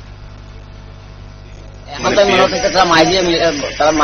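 A man talking, starting about halfway through, after a couple of seconds of low steady background hum.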